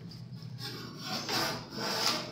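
Soft rubbing and rustling handling noises, with two short scratchy rasps in the second half.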